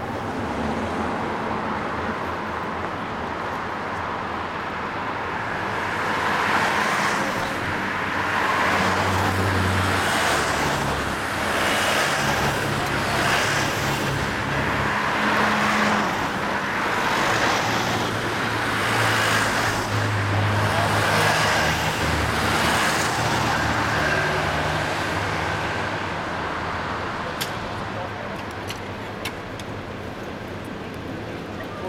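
A convoy of police vans driving past one after another, engines and tyres growing louder from about six seconds in and easing off again near the end.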